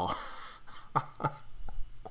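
A man gives a short breathy laugh, then drinks from a glass of beer: a few short swallows about a second in.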